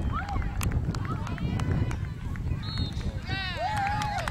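Spectators shouting from the sideline of an outdoor soccer game, with a longer, louder shout near the end as the attack reaches the goal. A low rumble of wind and camcorder handling runs under it.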